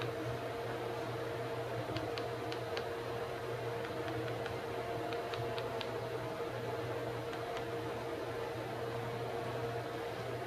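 A steady background hum and hiss. Over it, small clusters of faint short clicks as keys on a GW Instek GSP-730 spectrum analyzer's front panel are pressed: a few about 2 seconds in, more about 5 to 6 seconds in, and two near the end.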